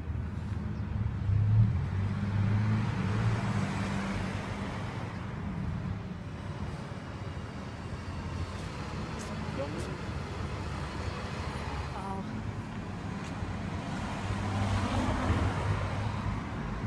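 Cars passing on a town street. One swells and fades in the first few seconds, and another passes near the end.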